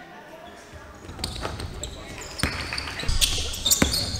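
Basketball bouncing on a hardwood gym floor: a few irregular thuds starting about a second in. High sneaker squeaks on the court come near the end, with voices echoing in the hall.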